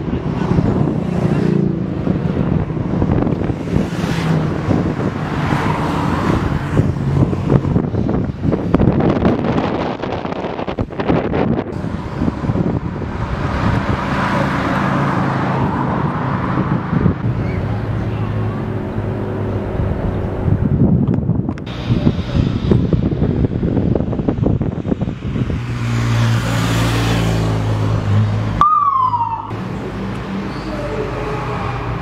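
Motorcycle escort engines passing along a road, with a police siren sounding over the traffic noise; near the end a short falling siren chirp.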